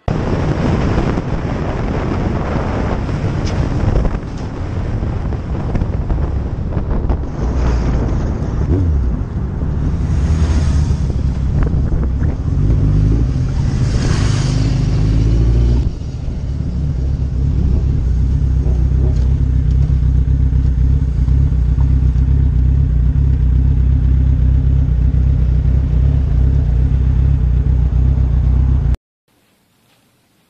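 Loud motor vehicle noise with a heavy low rumble, steadying into an even engine drone in the second half, then cutting off suddenly near the end.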